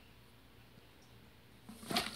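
Quiet room tone, then near the end a brief burst of handling noise as something held is fumbled and nearly dropped.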